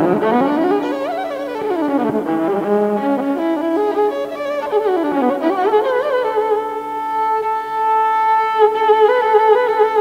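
Solo Carnatic violin in raga Kalyani: quick sliding glides sweeping up and down, then settling from about six and a half seconds in on a long held note with a wavering ornament.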